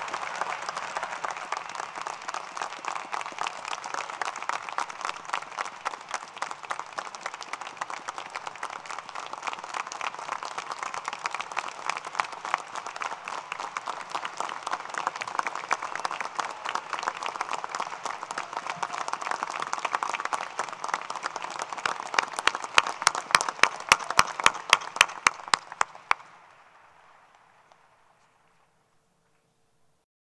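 Large crowd applauding steadily. Near the end a run of loud, sharp claps stands out, about five a second, and then the applause fades out quickly.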